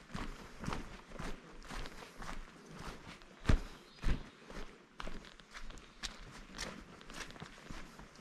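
A hiker's footsteps on a dirt forest trail, at an even walking pace of about two steps a second, with two heavier thuds about three and a half and four seconds in.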